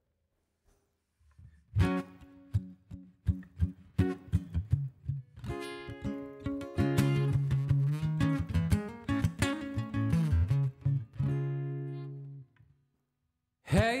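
Acoustic guitar being strummed. After a quiet start it begins about two seconds in with separate chord strokes, then settles into fuller, ringing strummed chords. It stops about a second and a half before the end.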